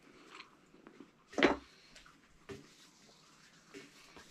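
Quiet chewing as a man eats anchovies by hand, with one short, louder sound about one and a half seconds in and a fainter one a second later.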